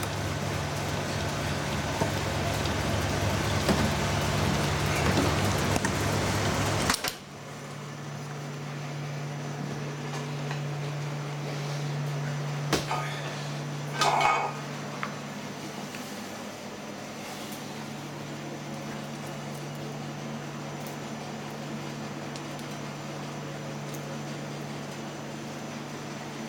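Gelato batch freezer running as it discharges gelato into a steel pan: a loud steady machine noise over a low hum. The noise stops abruptly about seven seconds in, leaving a quieter steady hum, with a brief clatter about halfway through.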